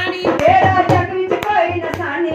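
A woman singing a Hindu devotional bhajan, with hand claps and a repeated low drum beat keeping time.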